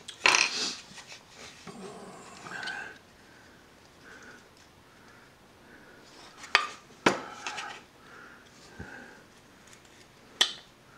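Hand carving knife cutting and scraping chips from a wooden figure, loudest right at the start. A couple of sharp clicks of the blade against the wood come about six and a half and seven seconds in.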